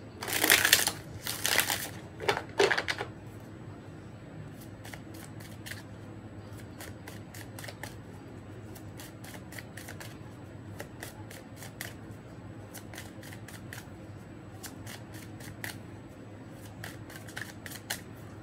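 A tarot deck being shuffled by hand: three loud rushes of cards in the first three seconds, then quieter shuffling with a steady patter of soft card clicks.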